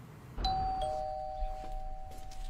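Doorbell chime ringing: a higher 'ding' about half a second in, followed by a lower 'dong', both tones held and ringing on.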